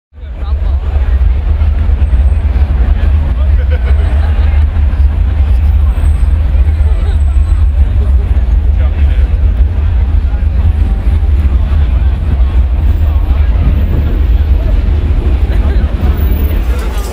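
Crowd babble over a loud, steady low rumble.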